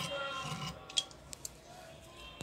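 Scissors snipping through fabric: one sharp snip about a second in and two lighter ones just after, while background music fades out.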